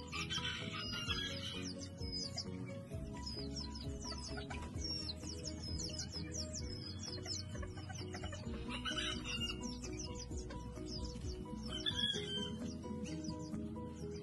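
Background music over many short, high chirps from chickens, with a few louder calls near the start, about nine seconds in and about twelve seconds in.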